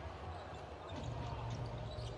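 A basketball being dribbled on a hardwood court, heard on a TV game broadcast over a steady low hum.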